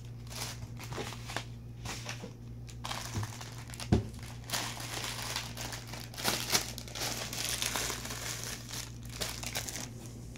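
Clear plastic packaging bags crinkling and rustling in irregular handfuls as curly hair bundles are pulled out of them, with one sharp knock about four seconds in. A low steady hum lies underneath.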